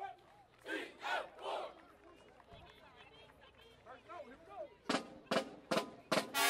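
People in a crowd shouting, then a few sharp drum strikes in quick succession near the end, a count-off just before a marching band starts playing.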